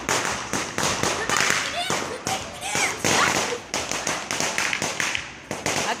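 Firecrackers going off: many sharp pops and cracks at irregular intervals.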